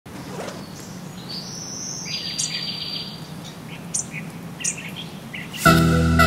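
Songbirds chirping outdoors, with short whistled glides and a rapid trill, over a low steady background hum. Loud music starts abruptly near the end.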